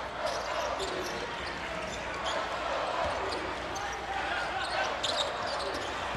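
Steady crowd noise in a college basketball arena during live play, with a basketball being dribbled on the hardwood court.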